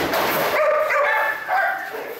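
Several dogs yipping and barking in short, high calls as they are let out of their crates, with a brief burst of noise at the start.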